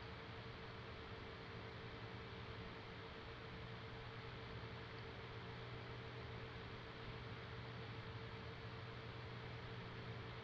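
Steady faint background hiss with a low, constant electrical hum underneath: the room tone of the recording, with no other sound.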